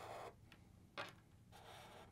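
Faint scratch of a Sharpie marker drawing strokes on marker paper, with a single small tick about a second in.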